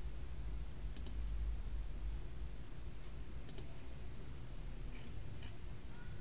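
A few faint computer mouse clicks, one a quick double click about three and a half seconds in, over a low steady hum.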